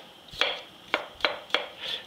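Chef's knife dicing raw potatoes on a wooden cutting board: about five sharp knocks of the blade striking the board, a few tenths of a second apart.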